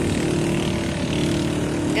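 A motor vehicle engine running nearby, a steady drone that holds one pitch.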